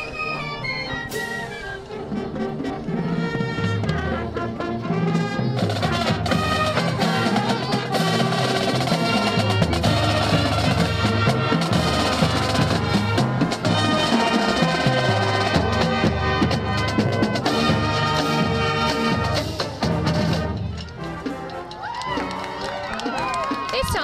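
High school marching band playing as it passes: brass and woodwinds over snare and bass drums and cymbals. It grows louder a few seconds in and drops off shortly before the end.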